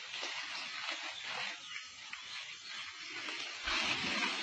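A baby elephant sliding down a muddy forest slope, a rustling, scraping noise of its body through wet leaves and mud over a steady hiss, growing louder near the end.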